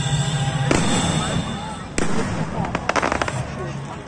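Aerial fireworks going off: two sharp bangs, the first under a second in and the second about two seconds in, then a rapid string of small crackling pops about three seconds in.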